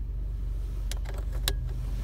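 Cigarette lighter pushed back into its dashboard socket: two short sharp clicks about a second in and half a second later, over the steady low hum of the idling engine.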